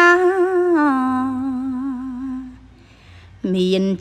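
A solo voice singing Khmer smot, unaccompanied chanted verse: one long wavering note that slides down in pitch and fades out a little past halfway, then, after a short pause, a new phrase starts lower near the end.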